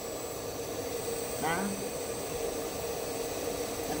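Electric motor of a belt-driven gem-faceting bench running steadily, a constant hum with hiss and a thin high whine. The bench is knocking, which she puts down to loose discs and a disc holder lying on top of it.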